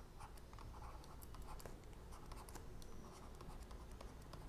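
Stylus writing on a drawing tablet: faint scratching strokes with small ticks as the pen tip moves and lifts.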